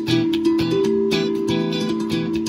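Acoustic guitar playing a quick run of plucked notes and chords, several a second.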